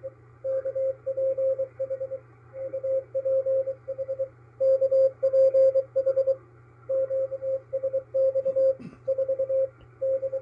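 Morse code (CW) from the maritime coast station KPH received on a shortwave SDR: a single mid-pitched tone keyed in dots and dashes over faint band hiss and a low hum. It is the station's automated marker and call, here sending 'DE KPH UPH KPH QSX'.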